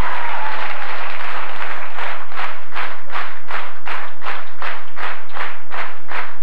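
Audience applauding: a dense wash of clapping that after about two seconds falls into rhythmic clapping in unison, about three claps a second.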